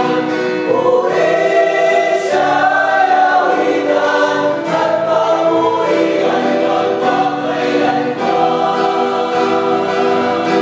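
Small mixed choir of women and men singing a Tagalog praise hymn in parts, with electronic keyboard and acoustic guitar accompaniment; the sung notes are long and held, changing chord about once a second.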